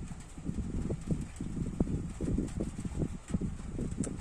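Handling noise from fingers gripping and turning a die-cast toy car close to the microphone: irregular soft knocks and rubbing, several a second.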